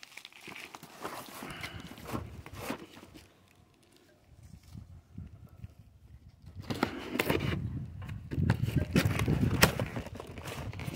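Cardboard box being handled and opened by hand: rustling, scraping and tapping of cardboard, with a short quiet gap a little before halfway and busier, louder handling in the second half.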